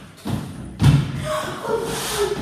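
A heavy thud a little under a second in, a foot landing a jump on the floor, followed by a girl's voice.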